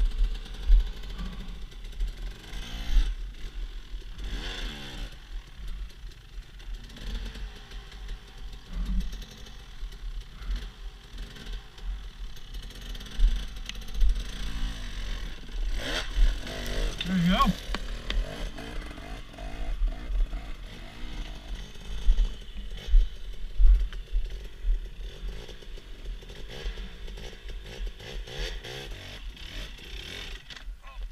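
Dirt bike engine running and revving in irregular bursts as a rider climbs a rocky slope, with a steady low rumble underneath.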